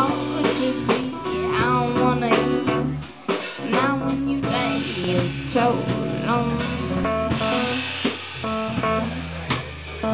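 A live band playing: guitar over drums and bass.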